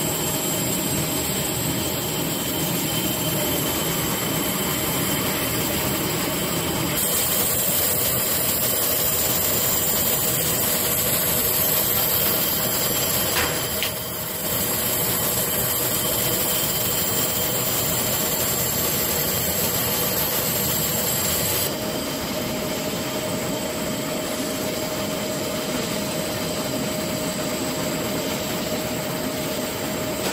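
A CO2 laser cutting machine running while cutting gold mirror acrylic: a steady mechanical rush with a constant hum under it. The noise changes character abruptly a few times.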